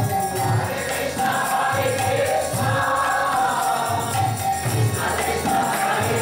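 Kirtan devotional chanting: a group singing to a harmonium, with jingling percussion and a steady low beat about twice a second.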